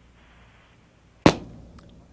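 A single sharp click on a call-in show's telephone line, about a second in, as the host works the line-switching buttons. Before it, a brief faint hiss of an open phone line.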